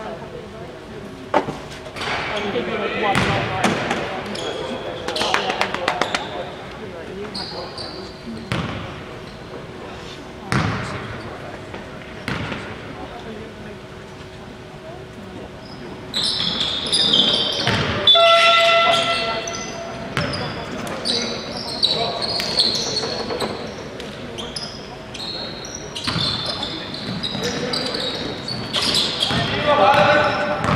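A basketball bounces on a wooden sports-hall floor with a hall echo: single knocks during the free throws. From about halfway through, once play runs on, shoes squeak and players call out.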